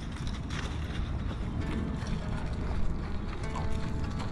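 Footsteps crunching through dry fallen leaves, a scatter of short irregular crackles over a steady low rumble.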